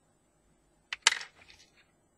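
Small electronic parts clattering in a plastic parts tray as a hand rummages in it: a sharp click about a second in, then a louder clatter and a few small rattles that die away.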